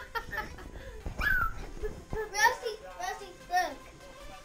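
Small children's high-pitched voices, chattering and calling out in play in short bursts, with the loudest calls about a second in and again midway.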